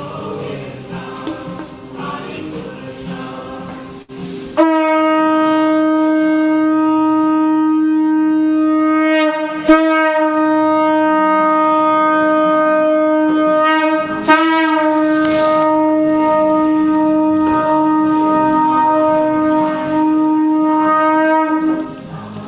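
A conch shell is blown in one long, steady, loud blast of about seventeen seconds, starting about four and a half seconds in, with brief wavers twice partway through. Before it come the last seconds of devotional singing.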